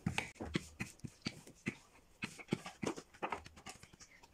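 Wooden rolling pin rolled back and forth over dough on a marble counter, its handles clacking and knocking irregularly, about three times a second.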